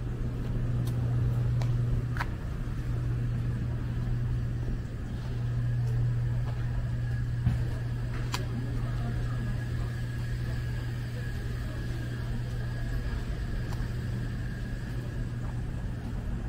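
Street ambience carried by a steady low hum of motor-vehicle engines, with a few faint ticks.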